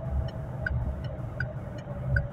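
Chevrolet car's turn-signal indicator ticking steadily inside the cabin, about one tick every three quarters of a second, signalling a right turn. The low hum of the engine and road runs under it.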